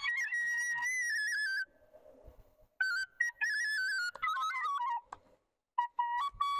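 Bansuri, a side-blown flute, playing a melody that steps up and down from note to note in short phrases, with a break of about a second near two seconds in and a brief pause near the end.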